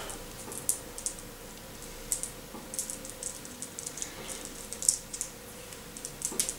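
Small hard fruit candies clicking lightly against each other as they are picked through in a palm: faint, irregular little ticks.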